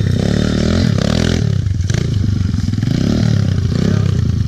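Small pit bike engine running at low speed, its revs rising and falling a couple of times.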